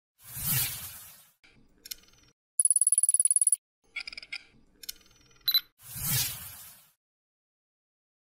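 Synthesized sci-fi interface sound effects for an animated intro. A whoosh opens it, then a fast run of high electronic beeps, then scattered digital blips and chirps, then a second whoosh. The last second is silent.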